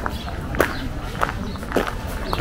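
Footsteps on a gravel path, a step a little more often than every half second, with voices murmuring in the background.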